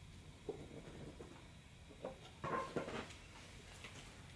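Faint scrapes and taps of a spoon working sticky honeycomb into a small shot glass, a few soft handling sounds with the loudest a little past halfway, over quiet room tone.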